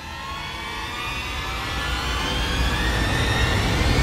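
Intro sound effect: a swelling riser of many slowly rising tones over a deep rumble, growing steadily louder.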